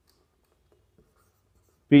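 Marker pen writing on a whiteboard, very faint, with a couple of light taps about a second in; a man's voice starts just before the end.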